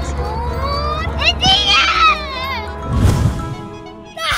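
A young girl's high voice talking over background music.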